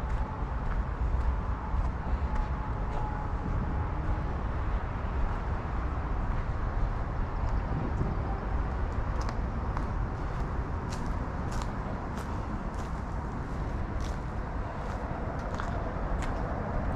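A steady low rumble on an outdoor action-camera microphone, with footsteps on a dirt trail ticking about twice a second in the second half.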